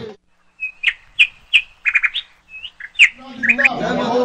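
A bird chirping: a string of about a dozen short, high chirps, some sliding downward, spread over about three seconds.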